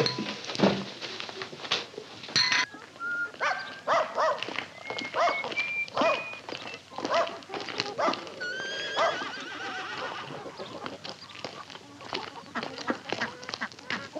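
Farmyard animals calling: a run of short pitched calls, with one longer rising call about eight and a half seconds in.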